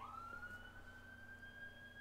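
Faint emergency-vehicle siren wailing, one long tone rising slowly in pitch.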